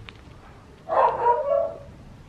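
A dog giving one short, whining bark about a second in, lasting under a second.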